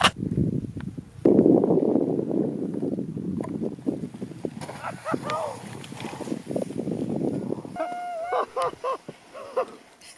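A low rushing noise swells up about a second in and slowly fades over several seconds, with scattered small knocks. Near the end comes a long held shout, then excited yelling.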